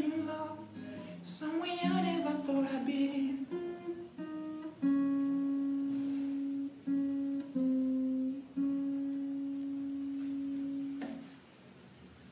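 A man's wordless singing over an acoustic guitar: the closing bars of the song, ending in a series of long held notes that stop near the end.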